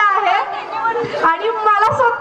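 A woman's voice through a microphone and loudspeaker, calling out in long, drawn-out high-pitched notes.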